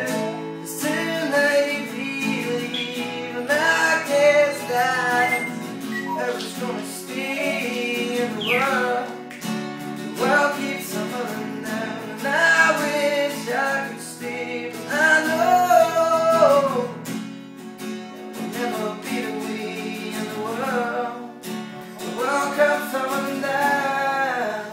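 A man singing in phrases with short breaks, accompanying himself on a strummed sunburst cutaway acoustic guitar.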